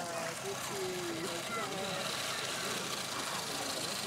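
Indistinct voices talking at a distance over a steady hiss.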